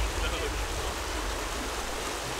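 Glacial meltwater stream rushing over rocks in a steady hiss.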